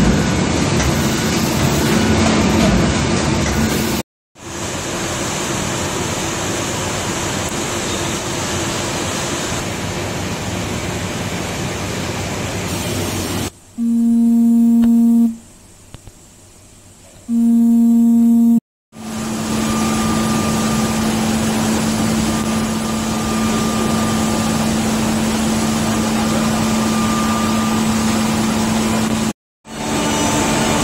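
Kolbus KM 600 perfect binder running with a steady mechanical clatter. Partway through, the running noise drops away and a low warning horn sounds twice, each blast about a second and a half. The machinery noise then comes back with a steady low hum under it.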